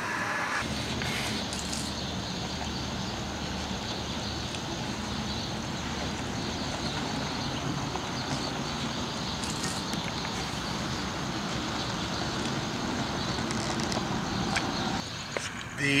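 Electric-converted Ford F-150 driving over a dirt lot: a steady rush of tyre and wind noise.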